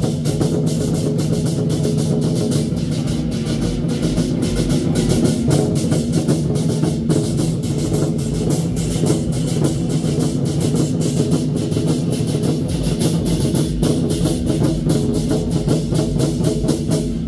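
A troupe of Chinese war drums beaten together in a fast, continuous stream of strokes that does not let up.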